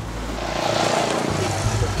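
A vehicle passing by on the street, its noise swelling and then fading over about a second and a half, over background music.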